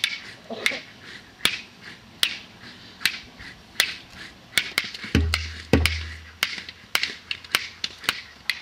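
Sharp percussive clicks struck in a slow, uneven rhythm, about one every three-quarters of a second and often in pairs, as live percussion for a performance. Two deep booms a little past the middle, about half a second apart.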